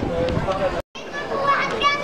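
Chatter of people and children's voices, unclear words, cut by a sudden brief dropout just under a second in; after it the voices are higher-pitched and a little louder.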